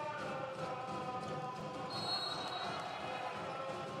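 Volleyball rally in an indoor arena: the ball is struck amid steady crowd noise with chanting voices.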